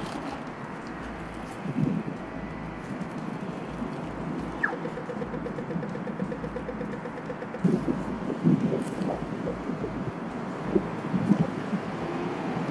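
Steady street traffic noise, with foil wrapping rustling as a burrito is unwrapped and bitten into. A short run of rapid even ticks comes midway.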